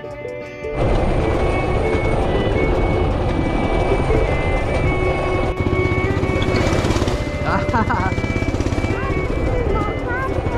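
Motorcycle engine running with wind rushing over the microphone while riding a dirt trail, starting abruptly about a second in and taking over from fiddle background music, with music still faintly underneath.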